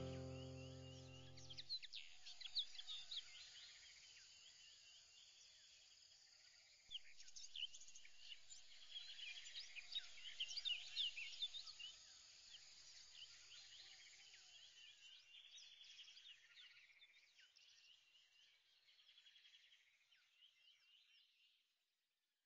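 Faint birdsong ambience: many quick chirps and short trills, busiest around ten seconds in, then thinning and fading out near the end.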